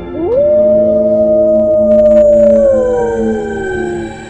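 A wolf howling over dark ambient music: one long call that rises quickly, holds its pitch for about two seconds, then slides slowly down.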